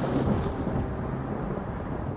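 Deep, rumbling tail of the trailer's closing boom sound effect, slowly dying away.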